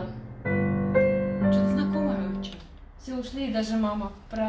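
Digital piano playing three chords about half a second apart, the last held and fading away; a woman's voice follows near the end.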